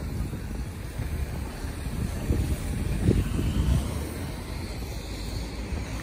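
A car pulling away, its engine a low rumble along with street traffic, with wind on the microphone.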